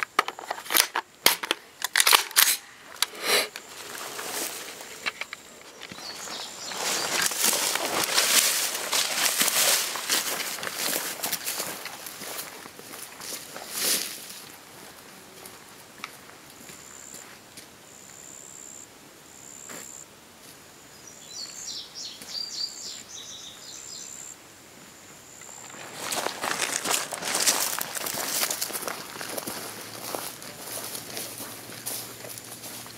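Sharp metallic clicks and knocks in the first few seconds as a magazine is seated in an AR-15-style rifle and the rifle is handled. Then footsteps swish and crunch through tall grass and brush, with a high chirping call in a quieter stretch past the middle.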